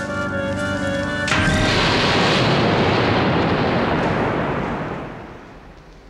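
A held chord of music, cut off about a second in by a special-effects explosion of the bombs: a sudden loud burst of rumbling noise that fades away over about four seconds.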